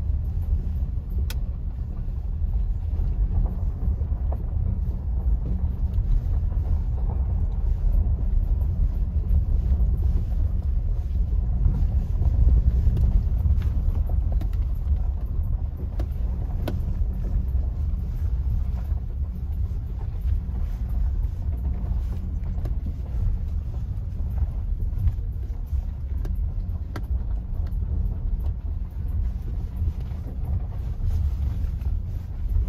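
Inside a vehicle's cabin on a dirt and gravel road: a steady low rumble of engine and tyres, with a few sharp clicks scattered through it.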